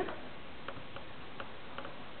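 Dry-erase marker writing on a whiteboard: a few faint ticks of the marker tip against the board over a steady background hiss.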